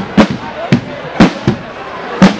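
Marching drums of a Guggenmusik drum section, snare and bass drum, struck loud and hard in a steady beat of about two strokes a second, the last one doubled quickly.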